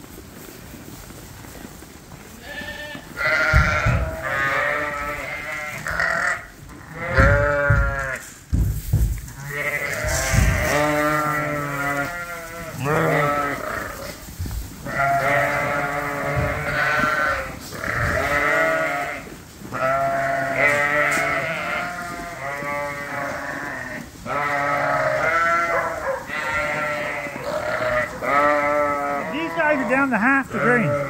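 A flock of sheep, ewes and lambs, bleating over and over at feeding time, many calls overlapping, each with a quavering, wavering pitch; the calling starts about three seconds in and carries on almost without a break.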